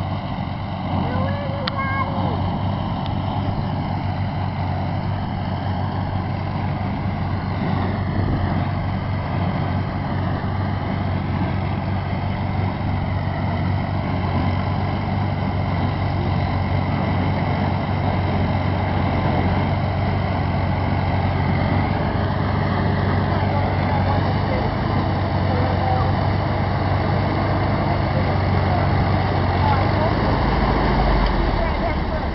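Tractor engine running steadily, a constant low hum that holds its pitch throughout.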